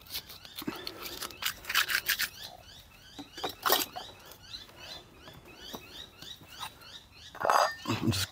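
Quiet handling sounds: scattered clicks and rustles as a peeled strip of plastic tape is scrunched up and a knife is picked up. Faint, rapidly repeated high chirps run underneath.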